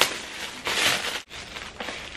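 Shiny metallic gift wrap being torn and crumpled off a present by hand, a crackly rustling that is loudest just under a second in.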